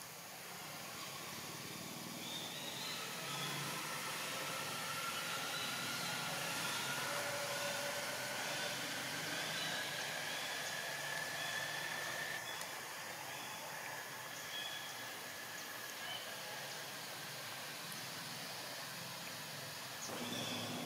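A distant engine hums with a slowly rising pitch, swelling and then fading over about fifteen seconds, over a steady outdoor hiss.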